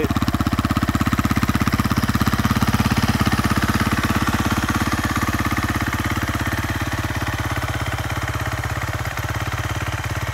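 A 2013 KTM 350 EXC-F's fuel-injected 350 cc single-cylinder four-stroke engine idling steadily, its exhaust pulses even, a little quieter in the second half.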